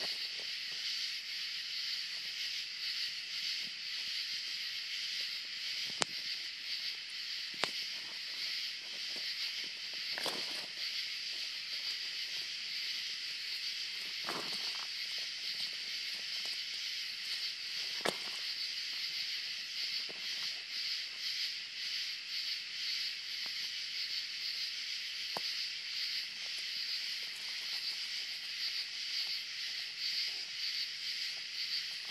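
Steady, high-pitched chorus of night insects with a fast flutter, broken by a few sharp clicks and scuffs as two nine-banded armadillos scuffle on gravel.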